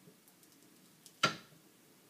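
Wire soap cutter slicing an end off a handmade soap loaf: a few faint ticks, then one sharp snap just over a second in with a short ringing tail as the wire goes through and meets the wooden board.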